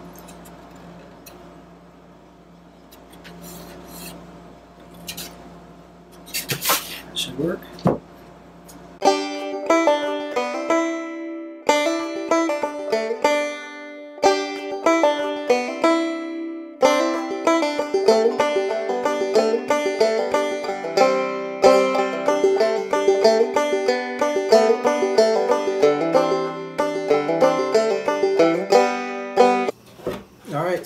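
Scratchy hand sanding or filing of the wooden edges of freshly cut guitar F holes, with a few knocks. About nine seconds in, upbeat plucked-string background music with a banjo-like sound takes over and runs to the end.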